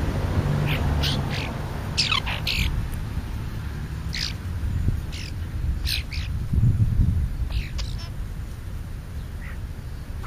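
Small birds chirping at a ground feeding spot: about a dozen short, sharp calls in small clusters, the densest about two seconds in and again around six seconds. Under them runs a low rumble that swells about seven seconds in.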